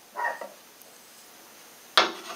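A dog gives one short bark in the background, then there is quiet room tone. A sharp click comes right at the end.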